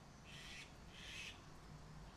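Two faint bird calls, each under half a second, about half a second apart, over near-silent room tone.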